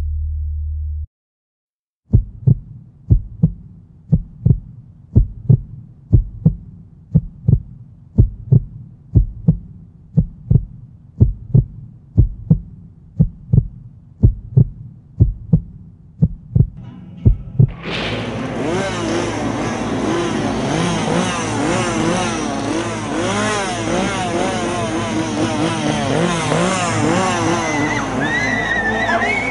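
Heartbeat sound effect: a steady double thump repeating a little faster than once a second for about fifteen seconds. About two-thirds of the way in it gives way to a loud, dense soundtrack with many wavering pitches.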